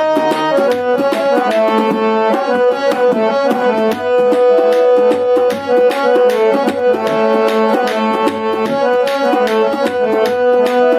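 Harmonium playing a melody of long held notes over a steady pattern of tabla strokes, an instrumental passage of a Gojri folk song with no singing.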